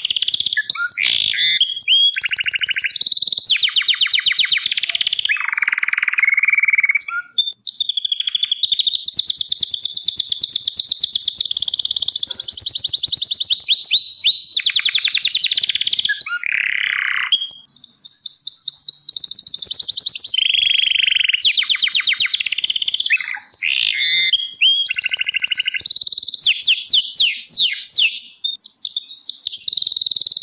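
Crested (corona) Gloster canary singing a long, high song of rapid trills and repeated rolling phrases, pausing only briefly about a third of the way in, a little past halfway, and just before the end.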